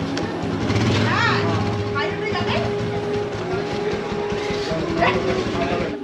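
Motorcycle engine running, with people's voices around it.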